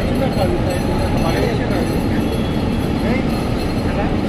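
Indistinct background voices over a steady, loud, rumbling noise, with no single distinct event.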